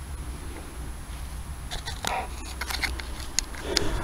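Faint rustling and a few light clicks from gloved hands and camera handling over a steady low rumble.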